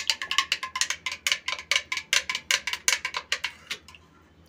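A spoon stirring juice in a drinking glass, clinking rapidly against the glass at about nine or ten clinks a second, until the clinks stop just before the end.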